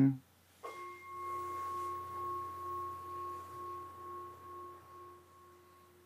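Altar bell struck once, about half a second in, as the chalice is elevated after the consecration of the wine. Its clear tone rings on and slowly dies away, the lower note pulsing slightly.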